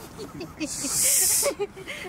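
A hiss of splashing water spray lasting about a second, thrown up by a released snook leaping out of the water, with a woman laughing.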